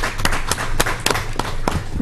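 A small group applauding: many scattered hand claps overlapping in an irregular patter.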